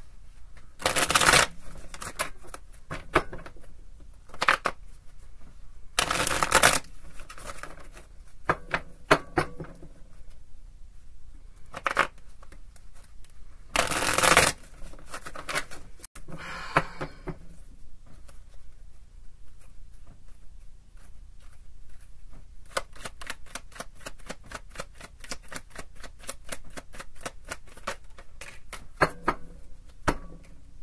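Tarot cards being shuffled by hand: short loud bursts of shuffling about a second in, around six seconds and around fourteen seconds, with scattered lighter card clicks between. Over the last seven seconds comes a long run of quick, light card clicks.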